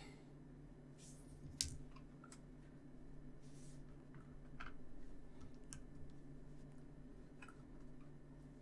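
Faint, scattered clicks and taps of small plastic model-kit parts being handled and pressed into place, with a screwdriver set down on a cutting mat; one sharper click comes about one and a half seconds in.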